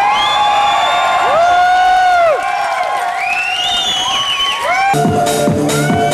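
Crowd cheering and whooping, with long overlapping shouts that rise, hold and fall. About five seconds in an electronic dance track starts, with a steady kick drum at about two beats a second under held synth tones.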